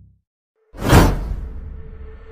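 The tail of a low intro sound fades out, then after a brief silence a whoosh sound effect swells about a second in and fades away, with a faint steady tone beneath it.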